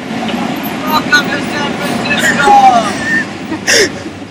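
Street traffic noise with voices calling out, and a short loud cry near the end.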